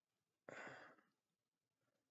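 A man's short, breathy sigh about half a second in. Otherwise near silence.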